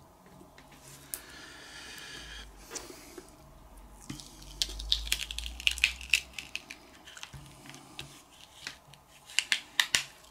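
Adhesive vinyl being weeded: a pointed pick lifts the excess black vinyl and it is peeled off its backing sheet, with irregular crackling and soft ticks that come thickest in the middle and again near the end.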